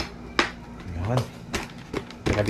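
Sharp plastic clicks from a KYT motorcycle helmet as its liner pieces are pressed and snapped back into the shell, two clicks within the first half second, followed by a short murmur of voice.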